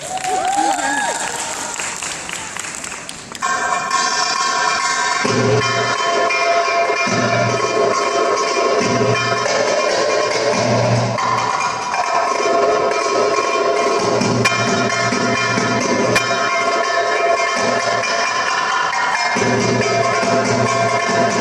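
Belly-dance music: held, sustained notes start abruptly about three seconds in. Low darbuka strokes join about two seconds later in a repeating rhythm. Before that comes a short noisy stretch with a few gliding tones.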